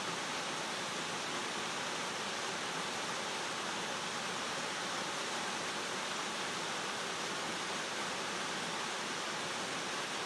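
Waterfall cascading over rocks into a pool: a steady, unbroken rush of falling water.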